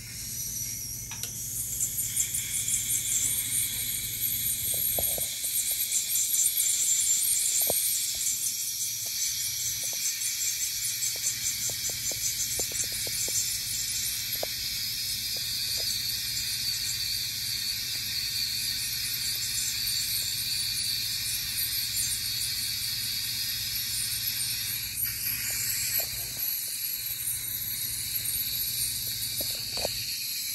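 Ultrasonic dental scaler running during a teeth cleaning, a steady high hiss with a fluttering edge from the vibrating tip and its water spray, scaling off tartar, together with the hiss of a saliva ejector's suction. A few faint ticks come through now and then.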